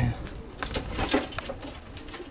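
Domestic pigeons cooing, low and faint, among a few short clicks and rustles.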